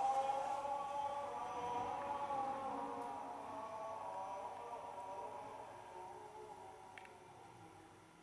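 Gregorian chant sung by a choir of men's voices, long held notes that slowly fade out.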